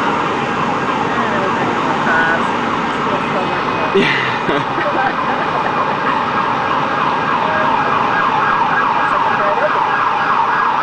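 Emergency vehicle siren sounding in a fast yelp, about three sweeps a second, clearest in the second half, over steady street noise.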